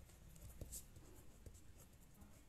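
Faint scratching of a pen writing by hand on a sheet of printed paper, with a few light ticks.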